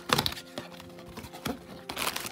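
Thin white cardboard box being opened by hand: a brief scraping rustle of the flaps, then quieter handling with a couple of light taps, over soft background music.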